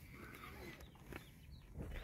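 Quiet background with a few faint bird chirps and a single light click about a second in.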